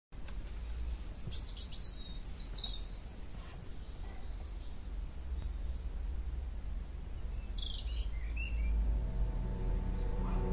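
Birds chirping in short flurries, in the first few seconds and again about eight seconds in, over a low steady rumble. Music begins to come in near the end.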